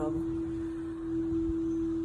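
A steady hum held at one unchanging pitch, the only sound during the pause in speech.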